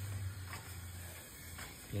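Quiet room tone with a steady low hum and faint background hiss.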